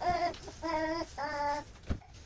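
A young child singing three short, steady notes, with a single knock near the end.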